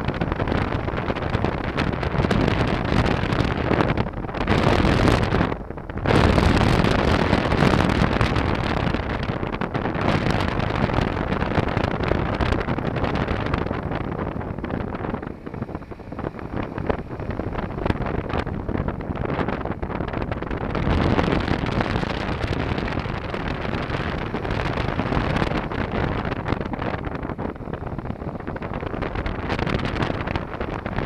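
Honda NC700 motorcycle on the move, mostly heard as heavy wind rushing over the helmet-mounted microphone, with the bike's running underneath. The noise drops briefly about six seconds in.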